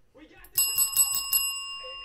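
A bell rung in a quick run of about six strikes, then left ringing out and fading slowly, sounded to celebrate a big hit.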